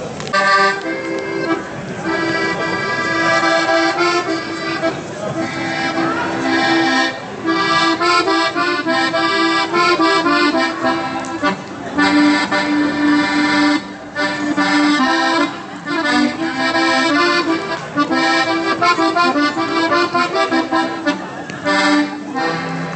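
An accordion playing a lively folk tune over a held bass note, in phrases with brief breaks between them.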